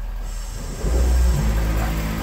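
Air-suspension compressor switching on a little under a second in and then running with a steady low hum, pumping air to raise the truck to its highest ride height.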